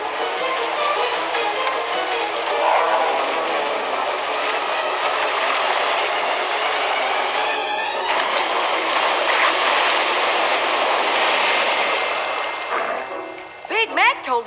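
Cartoon sound effect of heavy rain falling steadily, with a music score underneath, fading out near the end.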